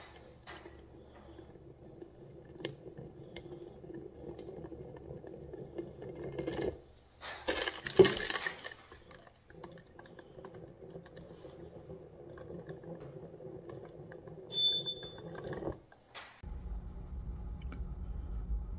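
A foam fast-food cup tipped and rocked by hand on a granite countertop: light clicks and scrapes of its base on the stone, with a louder clatter about eight seconds in, over a faint steady hum. Near the end the sound changes abruptly to a low, steady rumble.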